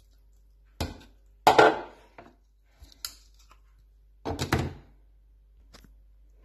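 Hard plastic knocks and clunks as a NutriBullet blender's cup and blade base are handled and set onto the motor base, about six separate knocks with the loudest about a second and a half in; the motor is not running.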